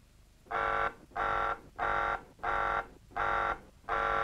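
Spaceship alarm buzzer sounding in a row of six even pulses, about one and a half a second, starting about half a second in. It is an alert aboard the ship following the order to intercept the missile.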